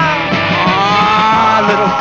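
Rock-and-roll band music with a steady beat; a long held note rises slowly in pitch through most of it.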